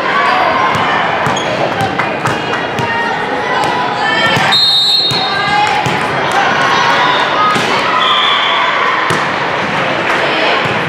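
Busy gymnasium sound during a volleyball match: many overlapping voices, scattered sneaker squeaks and knocks, and a volleyball bounced on the hardwood floor, echoing in the large hall. A brief shrill tone sounds about halfway through.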